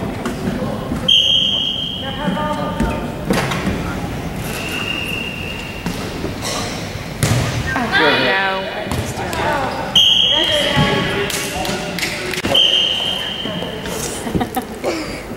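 Referee's whistle blown in four short blasts of about a second each, over voices and the thuds of a volleyball being served and hit in a gym.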